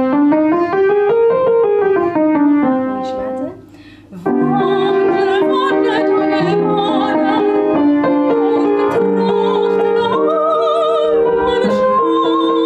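Upright piano playing, first a line of notes rising and then falling, and after a brief pause a woman singing with vibrato in a classical style over the piano accompaniment.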